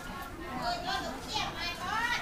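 Speech: a high-pitched voice talking, with other market chatter behind it.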